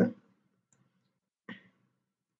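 A single computer mouse click, short and sharp, about one and a half seconds in, against near silence.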